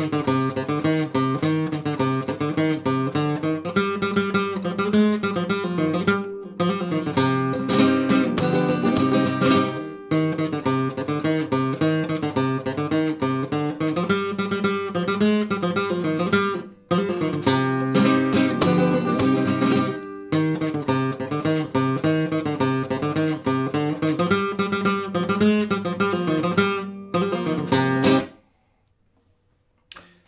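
Capoed nylon-string flamenco guitar playing a sevillanas on A minor and E7 at normal speed, strummed chords mixed with picked melody, with a few short sudden stops between phrases. The playing stops short near the end.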